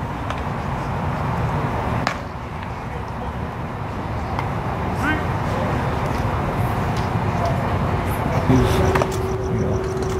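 Open-air background noise with indistinct voices, a single sharp knock about two seconds in, and a steady hum that comes in near the end.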